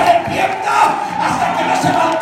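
A church congregation shouting and calling out over steady held music, with loud shouted voices.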